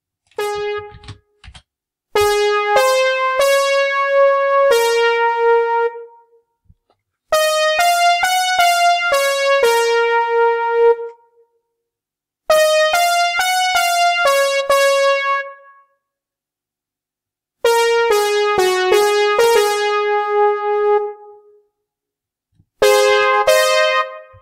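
Notation-software playback of a single melody line in a keyboard sound, one note at a time, in five short phrases with brief pauses between them. The tune is plainly in a major key.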